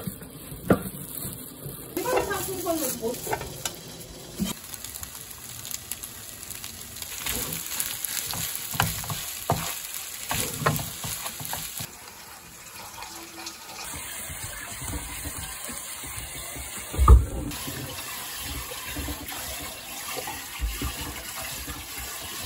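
Kitchen cooking sounds over several short cut clips: food sizzling in a pan as it is stirred, with many small clicks of a utensil. One loud thump comes about 17 seconds in.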